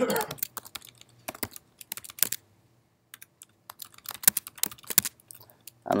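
Typing on a computer keyboard: irregular runs of key clicks with a pause of about a second midway.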